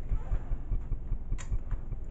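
A single short click about one and a half seconds in, the switch of a vintage Brother sewing machine's built-in lamp being turned on, over a steady low rumble.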